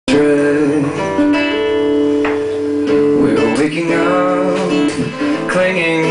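Acoustic guitar playing sustained, ringing chords as a song's live intro, with a male voice coming in near the end.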